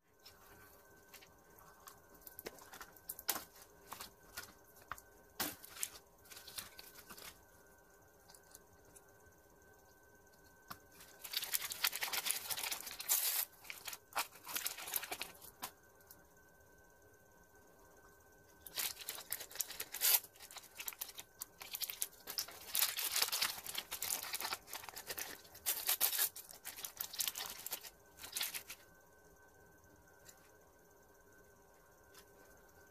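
Small plastic packets from a Mini Verse capsule being torn open and crinkled by hand, in two long spells of rustling, with scattered light clicks and taps of the tiny pieces being handled in between.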